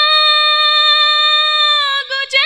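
A woman singing one long held note, steady in pitch, that dips slightly and ends near the close.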